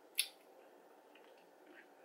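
A single short, sharp wet mouth click about a quarter second in, from a child sucking a Warheads sour candy, followed by near silence.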